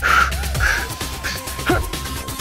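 Short, harsh straining shouts from a man forcing a thick nail to bend in his gloved hands, over background music with a long held electronic tone that comes in about half a second in.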